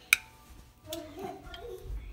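A metal knife clinks once, sharply, against the slow cooker's crock just after the start. A faint voice follows in the second half.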